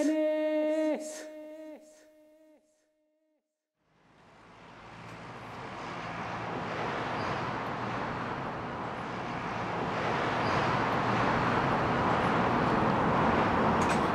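A shouted "Dennis!" repeating as a fading echo, then about two seconds of silence. Steady outdoor urban background noise, like distant traffic, then fades in and builds gradually.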